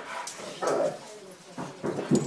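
Pet dogs barking and whimpering excitedly in greeting, a few short bursts, the loudest just under a second in.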